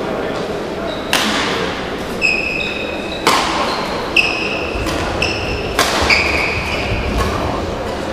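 A badminton rally: rackets strike the shuttlecock about six times, roughly once a second, each a sharp crack. Between the hits, players' court shoes give short high squeaks on the hall floor as they move and lunge.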